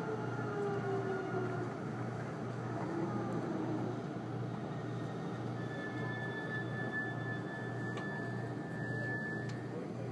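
Cabin sound of a JR 373 series electric train slowing along a station platform: a whine falls in pitch and fades over the first couple of seconds, over a steady low hum. About halfway through, a steady high tone sounds for about four seconds.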